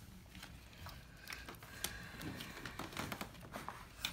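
Pokémon trading cards being flicked through and handled, a scatter of faint short clicks and rustles.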